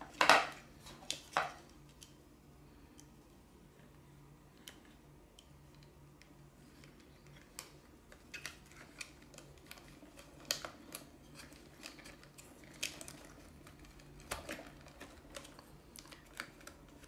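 Small clicks and taps of hard plastic parts being handled: a radio receiver with its wiring pushed into place inside a toy telehandler's plastic body while its yellow plastic cover panel is fitted. The sharpest click comes just after the start, with scattered lighter taps through the second half.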